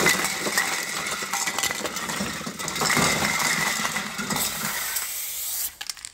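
Aerosol spray-paint can hissing, with metallic rattling and clinks; it dies away near the end.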